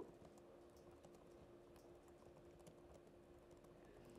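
Faint typing on a computer keyboard: many quick, irregular keystroke clicks a second, over a faint steady hum.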